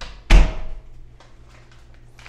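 An interior door pushed shut: a faint click, then one loud thud about a third of a second in that dies away within half a second.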